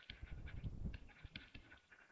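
Stylus writing on a tablet screen: faint, irregular taps and scratchy strokes as a word is handwritten.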